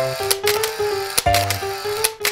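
Background music: held notes that change pitch every fraction of a second, with sharp percussive hits.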